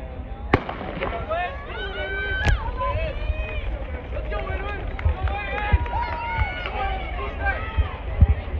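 A starting pistol fires once about half a second in to start a sprint race, with a second sharp crack about two seconds later. Spectators then shout and cheer as the runners race.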